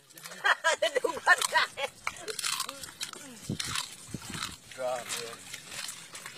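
People talking in the background in stretches of speech that stop and start.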